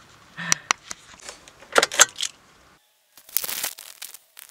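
Handling noise of a camera being pocketed and recording from inside a pocket: several sharp clicks and knocks, a brief drop to near silence a little before three seconds in, then a short burst of fabric rustling.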